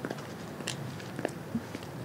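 Six-inch stiletto platform heels striking concrete as she walks. A few sharp heel clicks sound about half a second apart.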